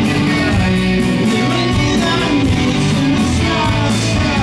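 Live indie rock band playing loudly: electric guitars, drums with steady regular cymbal strikes, and a voice singing.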